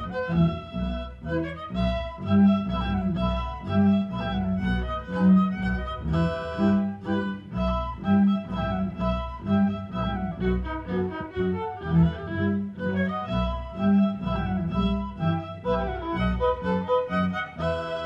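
An orchestra with a large string section playing. Violins sing the melody over cellos and double basses, whose low notes pulse at a regular beat.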